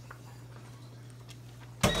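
Quiet room tone with a steady low hum and a few faint ticks. A man's voice cuts in near the end.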